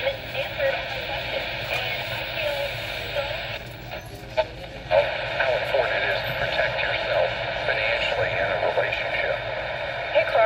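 Coby CR-A67 clock radio's small speaker playing a broadcast voice, thin and narrow-sounding. The sound drops out briefly about four seconds in, with a click, then a voice comes back.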